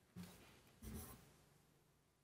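Near silence: room tone with two faint, short noises, one near the start and one about a second in.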